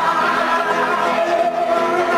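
Men singing a long held note together, the pitch wavering slightly as it is sustained.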